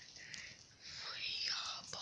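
A boy whispering faintly, starting about a second in after a near-silent moment.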